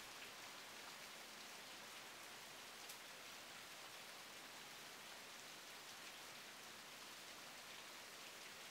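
Faint, steady light rain falling in a forest, an even soft hiss with a single faint tick about three seconds in.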